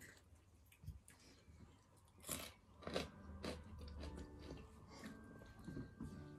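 Close chewing and crunching of food at the table, with a few crisp bites about two to three and a half seconds in.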